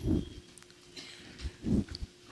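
Breath noises into a close-held handheld microphone: a short low puff at the start and another near the end, with faint hiss between.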